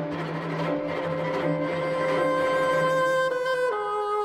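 Chamber music for bassoon and string quartet: a long held note that steps down in pitch twice near the end, over a low note repeating in a steady pulse.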